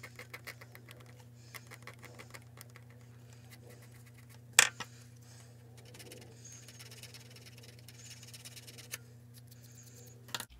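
Hobby knife scratching and scraping at the surface of a small resin model part, roughening it so the glue on a metal photo-etch part will bond: runs of quick little scrapes, with one sharp click a little before the halfway point. A steady low hum lies underneath.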